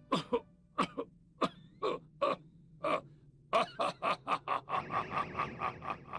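A voice makes short, breathy bursts, about one every half second at first, then quickening to about four a second over the last couple of seconds, with a steady hiss underneath near the end.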